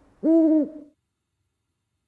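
A short hooting hum from a person's voice, one note of about half a second that rises and falls in pitch, in the first second, then cuts off suddenly.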